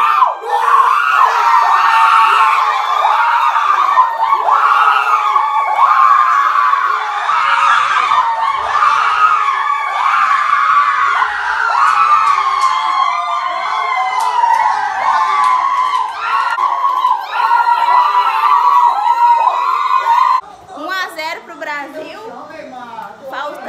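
A small group of people, mostly women, screaming and shouting together without a break, typical of celebrating a goal. The screaming cuts off abruptly near the end, giving way to quieter talk.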